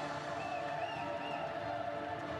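Steady background of a large gymnastics hall: faint music over a low, even crowd hubbub.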